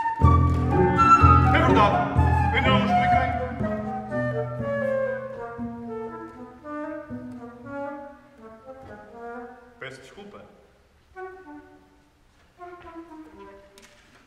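Small instrumental ensemble playing: a loud full burst with heavy low notes in the first few seconds, then lines of notes stepping downward and thinning into sparse, quieter phrases.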